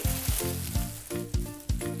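Background music with a steady beat, over the crinkly rustle of a thin sheet being spread out and handled.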